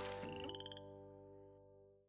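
Cartoon frog croak sound effect: a short, rapid pulsing call of about half a second, under a minute of silence-like fade. It sits over the held final chord of an advertising jingle, which fades out to silence.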